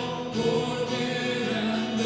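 A group of voices singing a hymn together, with long held notes.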